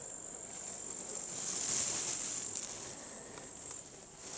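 Insects chirring steadily in a thin, high pitch. A soft hiss swells in the middle and fades again.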